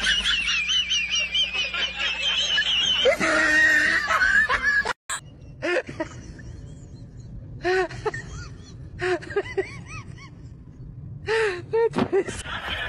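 A high-pitched, wavering laugh for the first few seconds, then after a short break several short bursts of laughter.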